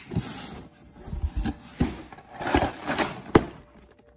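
Corrugated cardboard shipping box being opened by hand: flaps scraping and rustling, with a few knocks as a boxed set is lifted out. The loudest is a sharp knock near the end.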